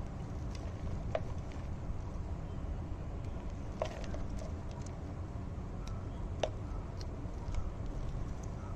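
Fingers working potting mix and pieces of banana peel by hand, with a few short, sharp crackles over a steady low background rumble.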